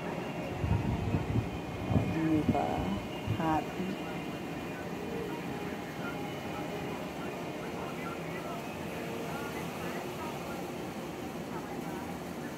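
Brief indistinct voice sounds in the first few seconds, over a steady low background hum that carries on after them.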